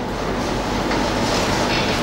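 Whiteboard eraser rubbing across a whiteboard in continuous strokes, making a steady, loud scrubbing noise.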